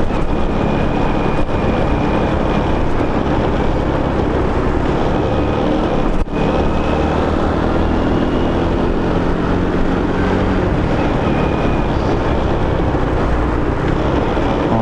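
Honda Biz's small single-cylinder four-stroke engine running under way, mixed with steady wind rushing over the microphone. A brief drop in the sound comes about six seconds in.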